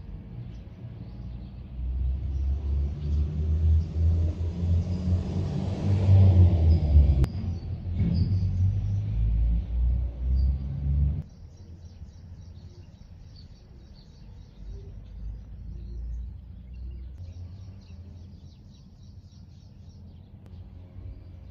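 A loud low rumble swells to its loudest about six seconds in, then cuts off abruptly about eleven seconds in. It leaves a quieter outdoor background with faint bird chirps.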